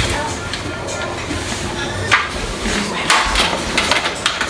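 Kitchen clatter of dishes and pans being set down on a stove: a few sharp knocks and clanks, the loudest about two and three seconds in.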